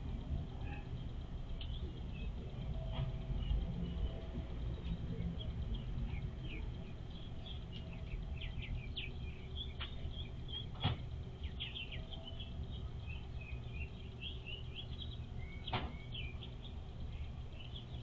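Small birds chirping in many quick, short high notes throughout, over a steady low rumble. Two sharp clicks stand out, about eleven and sixteen seconds in.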